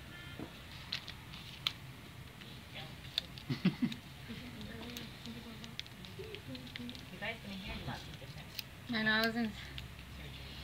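Scissors snipping and small dressing pieces being handled, giving a few light, sharp clicks and rustles, with quiet voices murmuring in the background and a short spoken sound near the end.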